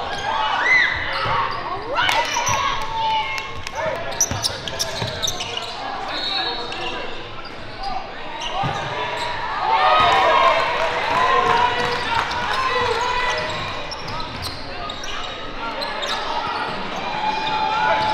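Live gym sound of a basketball game: a basketball bouncing on a hardwood court, with untranscribed voices of players and spectators, all echoing in a large hall.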